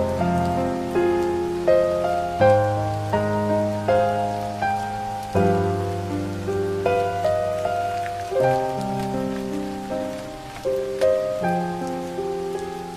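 Soft background piano music, single notes struck and fading a few times a second over held low bass notes, layered with a steady sound of rain falling.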